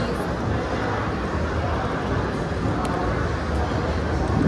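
Steady background noise of a busy indoor food hall, heavy in low rumble, with a single faint click about three seconds in.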